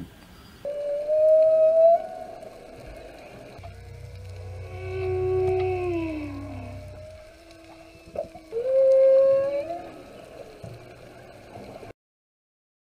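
Long, slow whale-song-like calls in soundtrack music: a rising call, then a longer falling call over a low drone, then another rising call.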